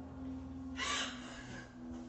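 A woman's short breathy gasp about a second in, over a steady low hum.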